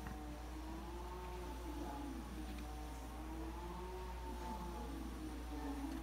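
Electric tubular motor of a remote-controlled combi roller blind running as it lowers the blind: a steady motor hum with a slightly wavering pitch.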